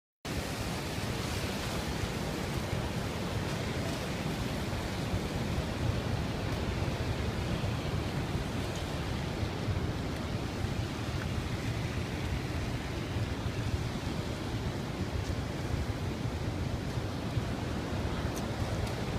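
Niagara's Horseshoe Falls pouring into the gorge: a deep, steady, unbroken rush of falling water.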